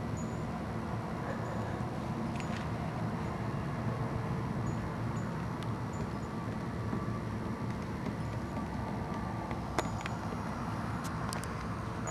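Steady low background rumble with a few faint ticks, and one sharper click about ten seconds in.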